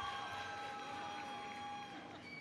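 A noisemaker horn from the audience sounding one long, steady, high note, which cuts off just before the end.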